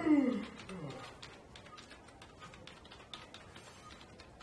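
A man's loud, drawn-out yawn, his voice gliding down in pitch over about a second. Light scattered clicks and rustles follow.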